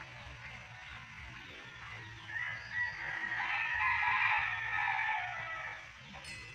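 A rooster crowing once, a long crow that begins about two seconds in and falls away near the end.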